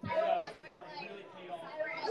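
Faint background voices and chatter, with a brief quieter voice in the first half second.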